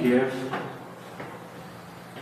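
A man's voice for the first half second, then quiet room tone in a hall with faint, even hiss and no clear event.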